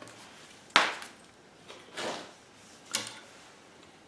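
Handling knocks on the homemade compressor rig as hands set things down and take hold of its fittings. There is a sharp knock less than a second in, a short rustle around two seconds, and a second, lighter knock about three seconds in.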